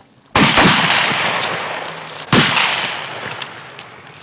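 Two shotgun shots about two seconds apart, each followed by a long fading tail.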